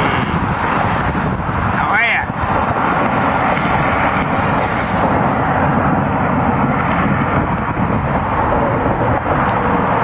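Steady, dense road-traffic noise, loud and unbroken.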